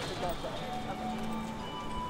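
A person's voice briefly at the start, then background music comes in with long held notes.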